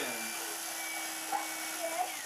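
Electric carving knife running with a steady hum as it slices through a roast turkey.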